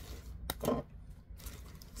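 Rustling and handling of packaging while a ball of yarn is dug out of a mystery bag, with a sharp click about half a second in followed by a brief rustle.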